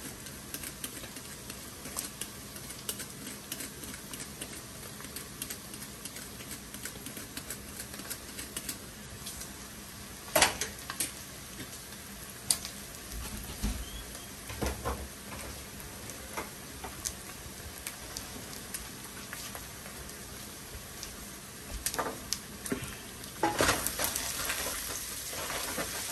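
Meat frying in a nonstick pot with a steady sizzle. A wooden spatula now and then clicks and scrapes against the pot, most sharply about ten seconds in and in a cluster near the end.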